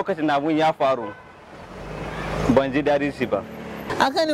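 A motor vehicle passing close by on the street: a rumbling rush that swells for about a second and a half, peaks about two and a half seconds in, then stays under the talk until it cuts off.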